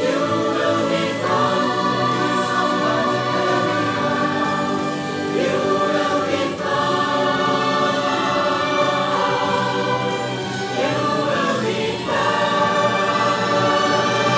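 A choir singing long held chords over instrumental accompaniment, the harmony changing every few seconds.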